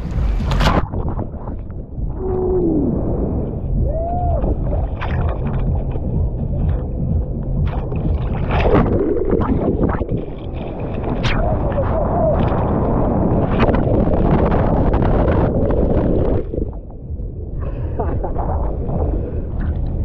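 Churning surf and splashing water heard from a GoPro held at the water's surface while bodysurfing a small wave, with gurgling as the camera dips under.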